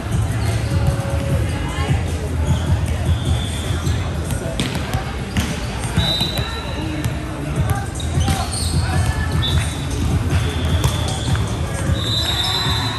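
Volleyball gym ambience over a steady low hum of the hall: volleyballs being hit and bouncing on the hardwood courts a few times, short high squeaks of sneakers on the floor, and background chatter with music.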